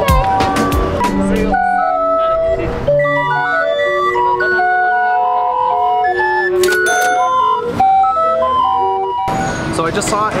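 Hand-cranked street barrel organ (a Mexico City organillo) playing a tune of held, reedy pipe notes. It starts about a second and a half in after loud street noise, and cuts off near the end.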